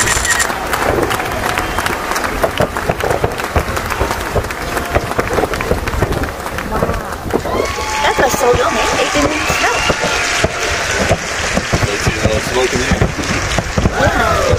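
Distant fireworks finale: a dense, unbroken string of bangs and crackles, with people's voices nearby.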